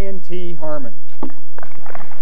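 A person's voice calling out in three drawn-out syllables, then scattered clapping and crowd noise building up about halfway through.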